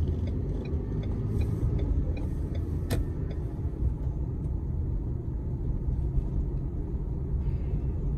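Inside a moving car: steady low rumble of the engine and tyres on the road. There is a sharp click about three seconds in.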